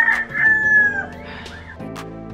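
A loud, drawn-out, high-pitched call with a voice-like ring, held and then dropping away about a second in.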